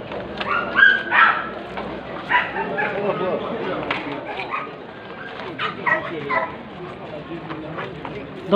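A dog whimpering and yipping with short high calls in the first few seconds, over the murmur of people's voices.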